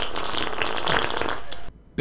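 A long fart sound effect played back, cutting off suddenly near the end.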